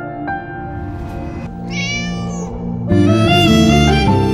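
A kitten meows once, a high arching call about a second long, over soft piano music. Near the end the music grows louder.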